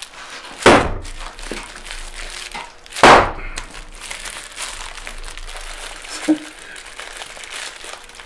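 A plastic-wrapped block of clay, too hard to throw, hit down hard on a workbench twice, two heavy thuds about two and a half seconds apart, with the plastic wrapping crinkling as it is handled.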